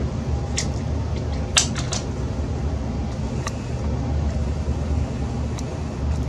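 Steady low mechanical hum, with a few light clicks and taps scattered through it.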